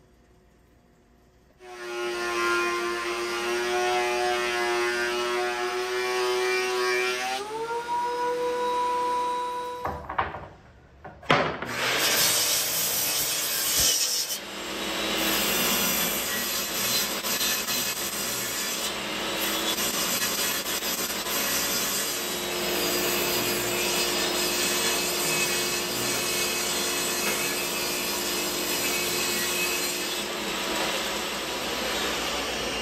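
Table saw ripping oak boards, a steady, dense cutting noise through the last two-thirds. Before it comes a steady pitched hum that steps up in pitch partway, then a brief lull and a sharp knock.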